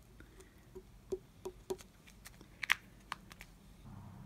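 Faint, irregular small clicks and taps of tweezers setting resin diamond-painting drills onto the sticky canvas, with one sharper click about two-thirds of the way through.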